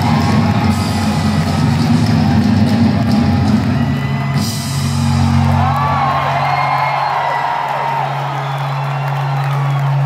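A rock band playing live in a large hall, with crowd whoops. About halfway through, the busy playing thins out to a long held low note, with rising and falling calls over it.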